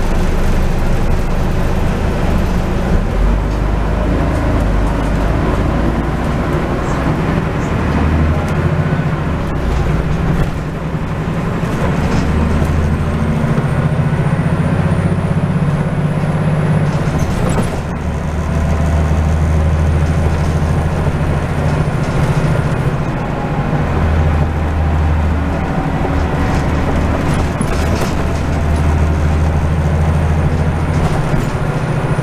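Scania N94UD double-decker bus under way, heard on board: the engine drones loud and steady over road noise, its pitch stepping up and down several times as the bus speeds up and slows. A faint high whine rises slowly for a few seconds about twelve seconds in.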